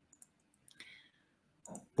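A few faint clicks of a computer mouse.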